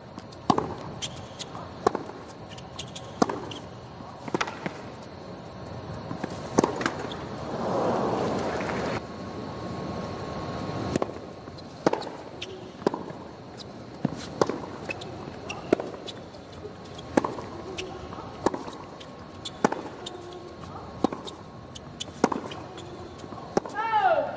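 Tennis rallies on a hard court: sharp pops of rackets striking the ball, and of the ball bouncing, come roughly once a second. A brief swell of crowd noise rises about seven seconds in.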